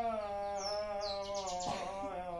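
Devotional naam chanting by men's voices, holding long, steady notes that waver slightly in pitch. Over it a small bird gives a quick run of high, falling chirps about half a second in.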